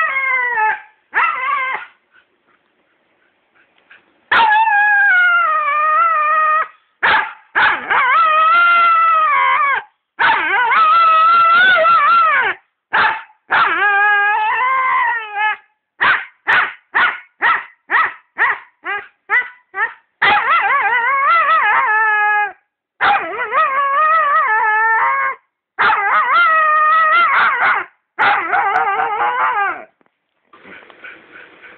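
A dog howling and whining in long calls that waver in pitch, with a quick run of short yips about halfway through: demand vocalising, asking for a ball.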